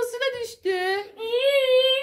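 Young child's high-pitched playful squealing: a short cry at the start, then one long, wavering 'aaah' from about a second in.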